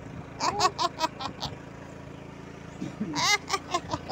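Small motorbike engine running steadily as the bike rides along. Over it come two clusters of short, high-pitched voice sounds, the first about half a second in and the second around three seconds in.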